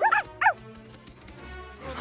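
Two quick, high puppy yips in the first half-second, over soft background music.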